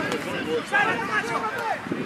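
Several people shouting on the sidelines of a soccer game, overlapping and too indistinct to make out words.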